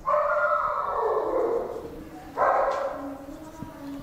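Marker pen squeaking across a whiteboard as a word is written: one long squeak of about two seconds, then a shorter one soon after.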